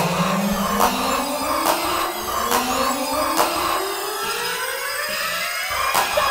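Mid-1990s German rave techno in a build-up: synth sweeps climb steadily in pitch over a pulsing mid-range synth pattern, with a sharp percussion hit about every second and the deep bass largely gone.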